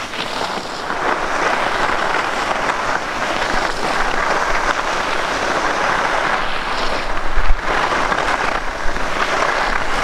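Skis scraping and carving on firm groomed snow through quick linked turns, the hiss swelling and easing with each turn, over wind buffeting the microphone. A short thump comes about seven and a half seconds in.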